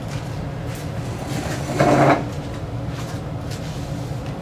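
Steady low room hum, with one short scraping or knocking noise about two seconds in as furniture is moved.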